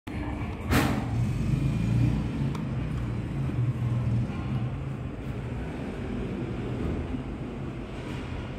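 Freight elevator running: a low, steady rumble with a hum under it, and one sharp knock just under a second in.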